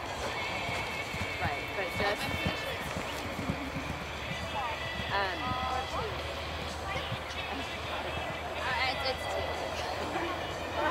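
Hoofbeats of a horse cantering on a grass arena, heard under background music and distant voices.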